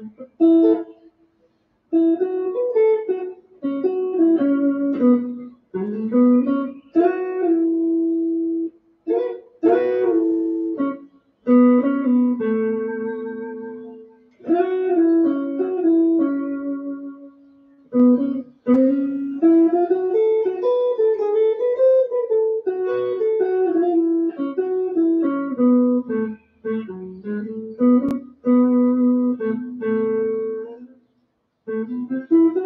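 Electric guitar played with a clean tone, improvising melodic single-note phrases separated by short pauses. Some notes are bent and held with vibrato.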